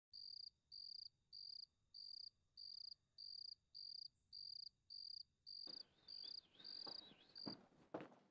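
Faint cricket chirping at a steady rhythm of just under two even, high-pitched chirps a second, stopping near the end: a night ambience effect.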